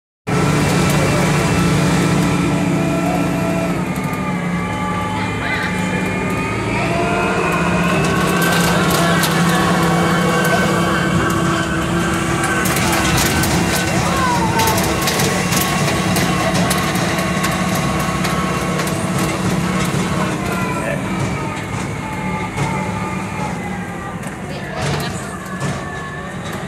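Tractor engine running as it tows a passenger trailer, its pitch rising about five seconds in and dropping again near the end. Rattling and clatter through the middle.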